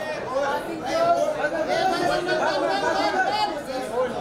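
Several voices talking over one another: steady crowd chatter with no single clear speaker.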